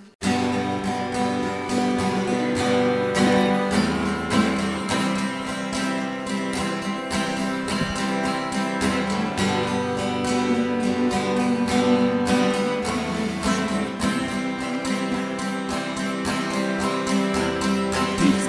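Instrumental introduction of a worship song, led by a strummed acoustic guitar, starting abruptly at the very beginning.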